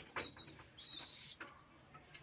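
Birds giving short, high-pitched chirping calls, twice in the first second and a half.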